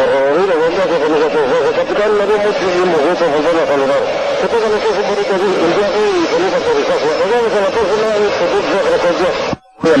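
Unintelligible voices talking without a break on a cockpit voice recording, muffled and run together, then cutting off abruptly near the end.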